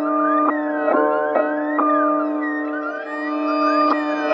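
Dark hip-hop instrumental beat in a drumless stretch: sustained keyboard chords and a long held note, changing every half second to a second, with no drums or bass.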